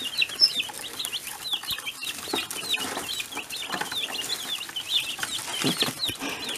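A brood of young chicks peeping without pause: many short, high chirps that slide down in pitch, several a second and overlapping.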